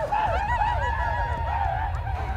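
Women's high, wavering vocal cries: a trilling chant whose pitch swoops up and down in quick warbles, with more than one voice overlapping.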